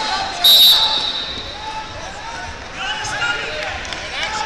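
One short, loud blast of a referee's whistle about half a second in, over voices in the hall.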